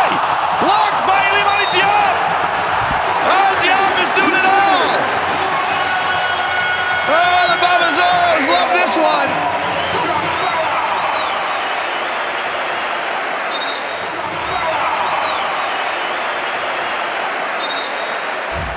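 Basketball arena game sound: steady crowd noise with sneakers squeaking in short chirps on the hardwood court and a ball bouncing. The squeaks come in clusters over the first half and die away in the second.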